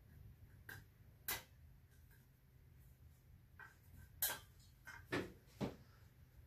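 About six sharp clicks and taps from hands working on a vintage Sears single-mantle pressure lantern's fount, the loudest about four seconds in, over a faint low hum.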